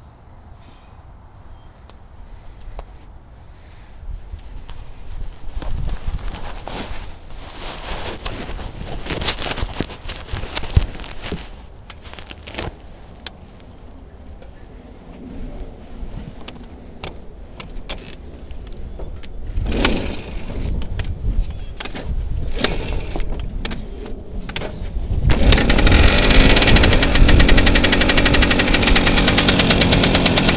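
Knocks, clicks and rattles of the Garelli moped being handled, then about 25 s in its small two-stroke engine catches and runs loudly with a fast, even beat.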